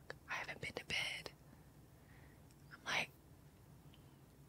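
A woman whispering a few breathy words, then one more short whispered word near the three-second mark, acting out a sleepy answer to a phone call.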